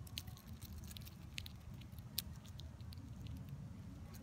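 Hornet chewing into a cicada's body: faint, irregular small clicks and crackles over a low steady rumble.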